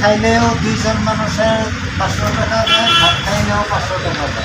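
People talking in conversation, over a steady low rumble of vehicle traffic.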